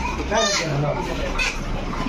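Background chatter of several people talking at once, with children's voices among them.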